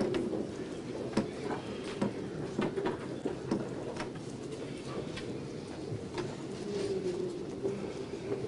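Room noise of people getting up and moving about: scattered short knocks and clicks from furniture and footsteps over a steady background hum, with a faint drawn-out squeak or murmur near the end.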